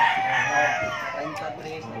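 A rooster crowing, its long call falling in pitch and fading away over the first second, with low voices underneath.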